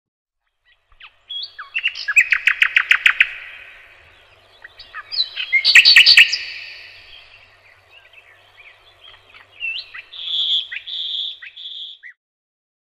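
A songbird singing: two loud song phrases, each ending in a fast run of about eight repeated notes, the first about a second in and the second about five seconds in, with short chirps between and a few high calls near the end.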